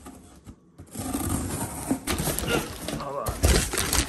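Cardboard shipping box being unpacked by hand: packing tape slit, then flaps and plastic wrapping rustling and crackling, with a heavy thump about three and a half seconds in.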